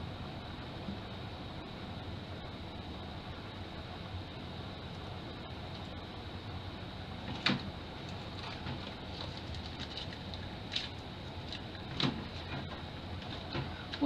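Light clicks and crinkles of disposable aluminium foil baking cups being handled and pulled from a stack, the sharpest about halfway and again near the end, over a steady background hiss with a faint high whine.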